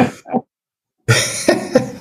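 A man coughing over a video call. A short cough is followed by a sudden gap and then a louder run of rough coughs, about a second in.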